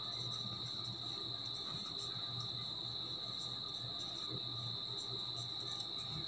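Crickets trilling steadily at one high pitch, with faint scratches of a marker pen writing on paper.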